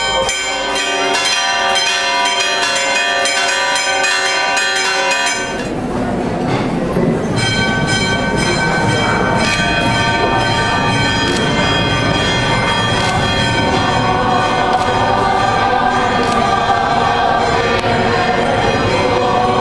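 Choral sacred music with long held notes. It shifts to a fuller sound reaching lower about five seconds in.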